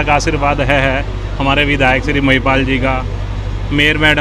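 A man speaking into a microphone, with a short pause about a second in, over a steady low hum.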